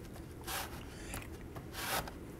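Hands rubbing strips of loop-pile carpet down onto a plywood board coated with tacky carpet adhesive, pressing them back into position: two brief, faint rubbing swishes, about half a second in and again near the end.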